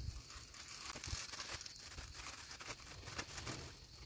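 Faint crinkling of a clear plastic bag and rustling of dried thyme stems as a bunch of thyme is pushed into the bag, in a run of small, irregular crackles.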